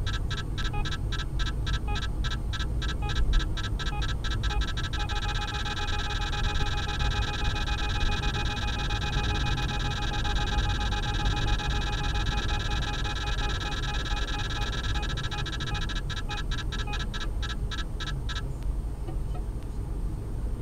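A radar detector alert sounds over road noise from the car. It is a quick train of beeps that runs together into one continuous alarm for about ten seconds, then breaks back into beeps and stops near the end. The beeps running together is typical of the detector picking up a radar signal that grows stronger as the car closes on it.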